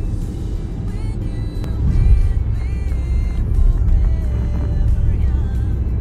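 Low, steady road and engine rumble heard from inside a moving car, growing louder about two seconds in, with music playing over it.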